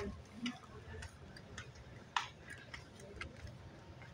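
Indoor shop ambience: a low steady background hum with scattered, irregular light clicks and ticks, one sharper click about two seconds in.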